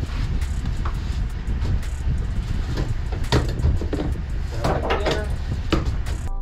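Ratchet straps being tightened around a crate in a cargo van: scattered clicks and rattles of the strap and ratchet buckle, busiest about three and five seconds in, over a steady low rumble.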